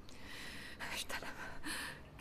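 A person's quiet, breathy vocal sounds: audible breaths and soft whispering with a few sharper hissing moments.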